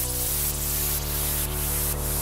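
Electro house track in a breakdown without the kick drum: held synth bass and chord notes change about a quarter second in, under a hissing noise layer that swells about twice a second.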